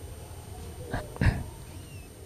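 A brief, short vocal sound from a person about a second in, a murmur or hum rather than words, over a steady low room background.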